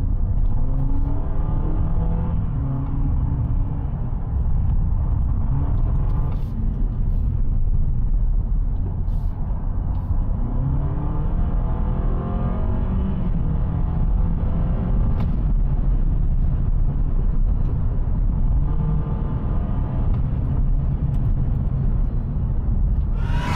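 Honda Accord e:HEV's 2.0-litre four-cylinder engine heard from inside the cabin while the car is driven hard, over a steady rumble of road noise. Three times the engine note climbs in pitch as the car accelerates out of corners. The engine drives a generator while the electric motor drives the wheels, yet its revs follow the throttle so it sounds like a car driven hard on its engine.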